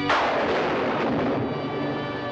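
A sudden loud thunderclap crash that dies away over about a second and a half, over a sustained organ chord.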